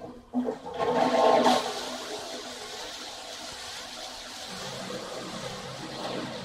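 A rushing, gurgling water-like noise, like a toilet flushing, heard as an effect once the music stops. It swells in the first second or so, then goes on steadily with a repeating wavering swirl.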